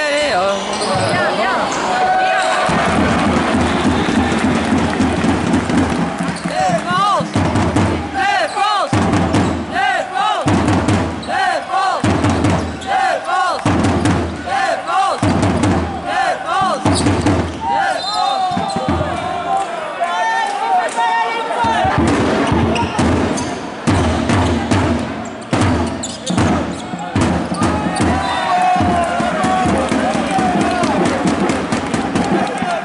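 Live basketball game sound in an arena: the ball bouncing on the court amid a steady low beat and voices from the hall.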